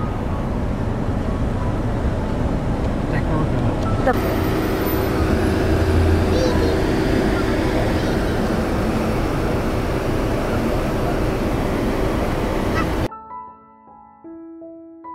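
Steady low rumble of a car rolling slowly along a road, heard from inside the car. About a second before the end the rumble cuts off suddenly and a few held notes of background music come in.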